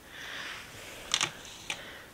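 A soft rustle followed by two sharp clicks about half a second apart, from a camera being handled and refocused.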